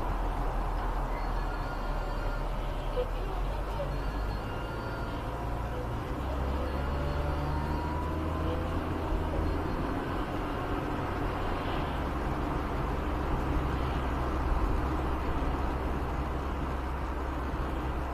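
Car engine and road noise heard inside the cabin as the car drives through town and slows almost to a stop: a steady low hum whose lowest pitch steps up and down a couple of times.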